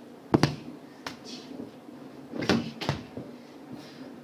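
Four sharp knocks or thumps in a small room: the loudest about a third of a second in, a weaker one about a second in, and two more about half a second apart near the three-second mark.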